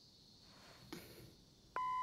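An electronic beep: a single steady tone starts near the end, after a stretch of near quiet broken by one faint click about a second in.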